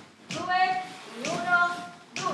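A voice calls out two held, sung syllables about a second apart, each starting sharply and lasting about half a second, keeping time for the dancers in place of music.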